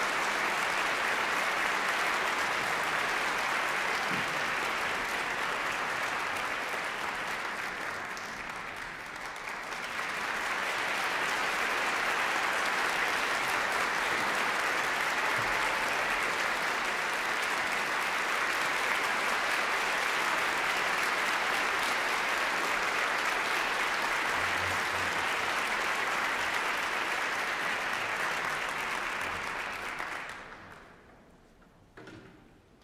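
Audience applauding steadily, thinning briefly about eight seconds in, then picking up again and dying away at the very end.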